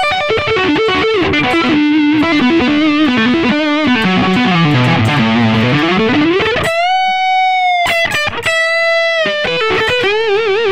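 Red Charvel So-Cal electric guitar through a Yamaha THR10X amp playing a fast single-note pentatonic lead run that winds down low and climbs back up. It ends on two held high notes, the second shaken with vibrato.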